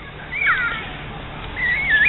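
High-pitched animal calls: one falls in pitch about half a second in, and a wavering call starts near the end, over a faint steady background.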